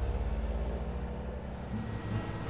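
Cartoon sound effect of vehicle engines driving off: a low, steady, pulsing rumble that slowly fades.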